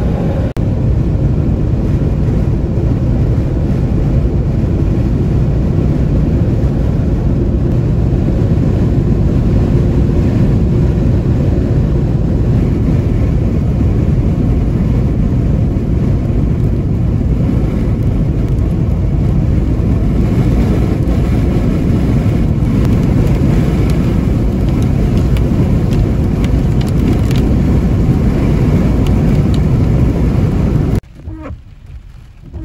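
Steady road and engine noise heard inside a Jeep Wrangler cruising at highway speed, a constant low rumble.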